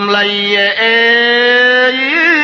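A man's voice singing in Cambodian chapei dang veng style, holding one long, steady note that steps up in pitch just under a second in.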